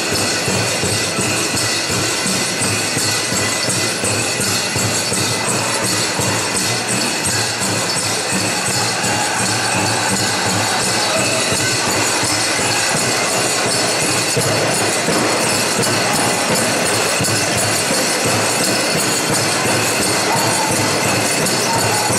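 Powwow music: a drum group drumming and singing, steady and loud throughout, with the metal jingles on dancers' regalia ringing over it.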